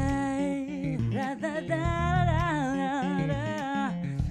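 A woman singing long wordless notes with vibrato, in two held phrases, over an electric bass guitar playing short low notes.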